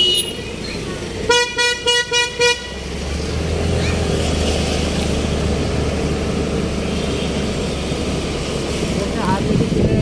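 A vehicle horn gives about five short beeps in quick succession, then the steady engine and road noise of a motor scooter riding through city traffic.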